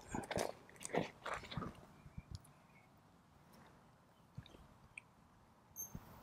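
Hands digging into and pressing loose garden soil while tomato seedlings are set in a raised bed: soft crunching and rustling in the first two seconds, then near quiet with a few faint clicks.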